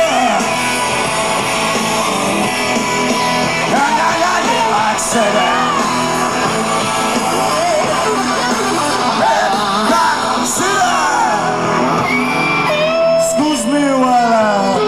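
Live rock band playing loud, with electric guitars and shouted, yelled vocals over the band.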